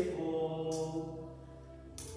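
A sung chant note held and fading away, while a swung metal thurible clinks against its chains twice.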